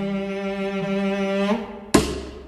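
Bowed cello and double bass holding long, sustained low notes in a slow instrumental jazz piece, shifting pitch briefly about one and a half seconds in. A single sharp percussive strike sounds near the end.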